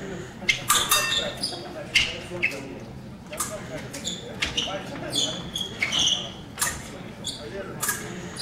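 Épée fencers' footwork on a raised stage floor: a string of sharp steps and stamps with short shoe squeaks, in a hall.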